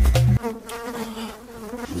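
Music with a heavy bass beat cuts off about half a second in. It is followed by a steady, low buzzing drone on one held pitch.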